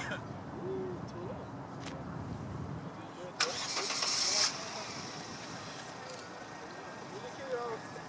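A motor vehicle engine rumbles low for the first few seconds. About three and a half seconds in comes a sudden sharp hiss lasting about a second. Faint bits of people's voices are heard throughout.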